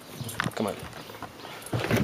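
A few light, irregular footstep taps, with a voice saying "come on".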